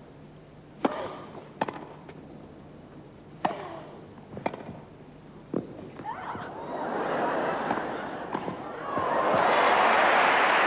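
Tennis rally on grass: about five sharp racket-on-ball hits, roughly a second apart. From about two-thirds of the way in, the crowd rises into murmuring and applause that swells near the end as the point is won.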